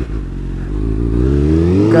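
2001 Suzuki GSX-R600's inline-four engine through a Delkevic slip-on exhaust, pulling as the bike gathers speed, its pitch rising slowly and getting louder.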